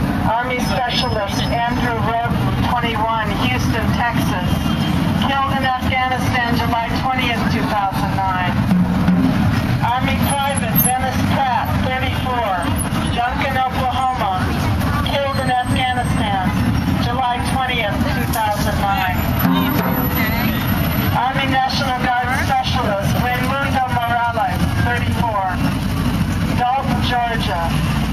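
Street traffic rumbling steadily, with people's voices talking throughout.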